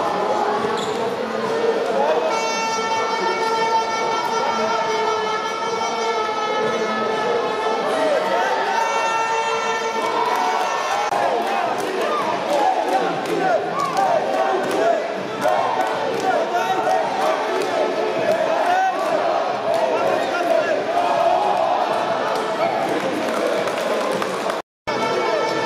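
Futsal ball thudding on a wooden sports-hall floor as it is kicked and bounced, amid children's shouts and crowd voices echoing in the hall. A long steady pitched tone holds for several seconds in the first half.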